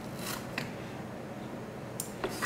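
Scissors cutting a bunch of calf body hair off the hide for a fly's wing: one short, soft, crisp snip about a quarter of a second in, followed by a light tick.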